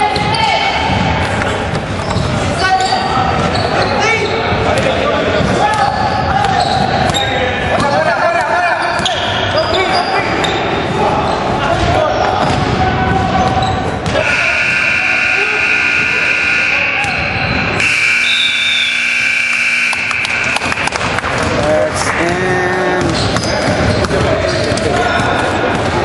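Basketball being dribbled and bounced on a hardwood gym floor, with players calling out. About fourteen seconds in, a long, steady scoreboard buzzer sounds for several seconds, briefly breaking once, as the game clock runs out to end the period.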